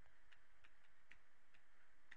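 Stylus tapping on a graphics tablet while a word is handwritten: faint, irregular light ticks, several a second.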